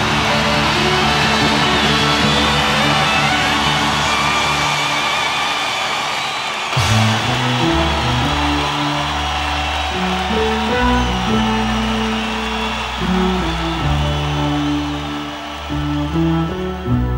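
Rock music with electric guitar and a band. About seven seconds in, a sharp hit marks a change, and the music carries on with a new bass line.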